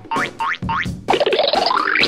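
Cartoon boing sound effects: a quick run of short springy boings, about three a second, each gliding upward in pitch over a low thud, then a longer rising sweep in the second half.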